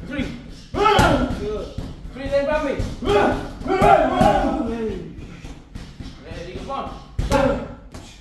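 Boxing gloves striking focus mitts, a few sharp slaps, the loudest about a second in and near the end, mixed with wordless voices of the two men.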